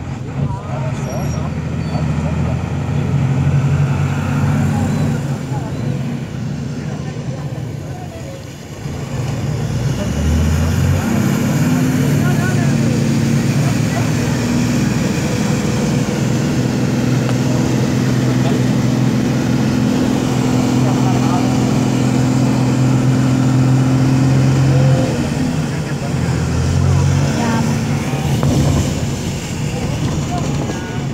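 Motor vehicle engine running under load as the vehicle drives through floodwater on the road; the hum eases off about a quarter of the way in, then picks up and holds steady for most of the rest.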